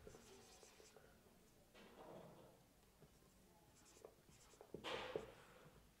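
Marker pen writing on a whiteboard: faint strokes and small taps of the tip, with a louder stroke near the end.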